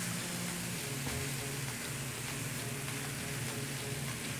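Shredded chicken and diced bacon frying in a pan, a steady soft sizzle.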